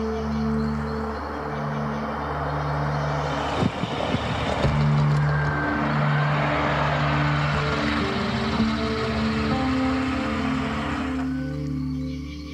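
A car drives past, its engine and tyre noise swelling in from about three and a half seconds in and cutting off suddenly near the end, over background music of long sustained low notes.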